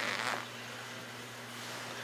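A steady low hum with a faint hiss, with no distinct sound over it.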